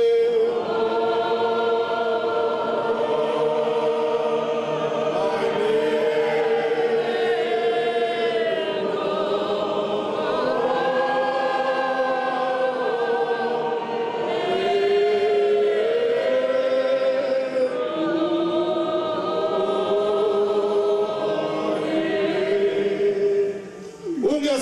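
A choir of many voices singing a hymn, with long held notes that slide from one pitch to the next.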